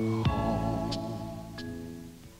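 Soft instrumental film score: held chords with three struck notes, fading away.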